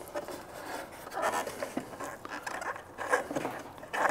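A bolt being threaded by hand into a threaded insert in a plywood board, giving a few short, faint scrapes and rattles.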